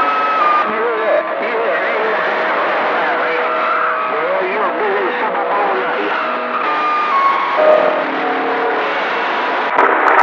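Radio receiver tuned to a busy band between transmissions: steady static hiss with faint, garbled distant voices and a few steady heterodyne whistles.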